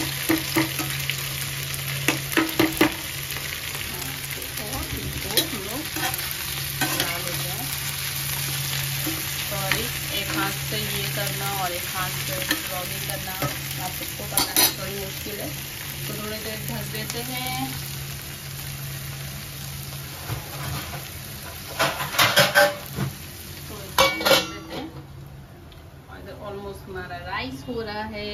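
Chopped okra frying in hot oil in a nonstick frying pan, with a steady sizzle. A spatula stirs and scrapes against the pan now and then, with a run of louder clatters near the end, over a low steady hum.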